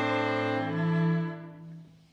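String quartet of cello, viola and two violins playing long held chords, with a low note under it throughout and a second note joining about two-thirds of a second in. The chord fades away near the end. It is a sonification of global temperature records: each instrument's pitch follows one latitude band's average annual temperature, year by year.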